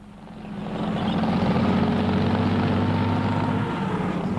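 A heavy engine running steadily with a fast, even pulse, fading in over the first second.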